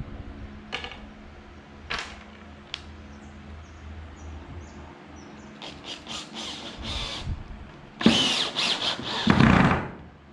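Cordless drill driving a screw through a pine batten into wooden door boards: a few short bursts of the drill, then a longer, louder run near the end as the screw goes in.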